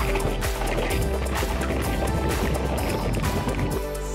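Background music with a steady beat, over water from a bottle splashing and spattering onto a small action camera; the splashing stops near the end.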